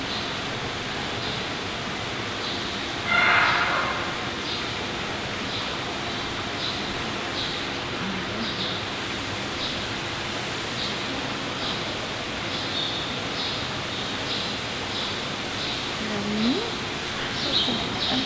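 Steady background hiss of indoor ambience, with faint short high chirps repeating about once or twice a second. A brief louder rustling burst comes a few seconds in, and a short rising sound near the end.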